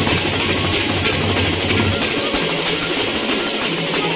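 Gendang beleq ensemble playing: a dense, steady clatter of clashing hand cymbals over large barrel drums. The low drum tones drop away about halfway through, leaving mostly the cymbals.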